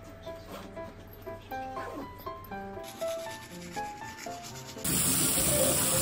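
Background music with a light melodic line; about five seconds in, a loud hiss of shower water spraying from a shower head comes in and runs for a little over a second, the loudest sound here.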